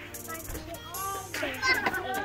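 A young child's voice, starting about a second in, over background music.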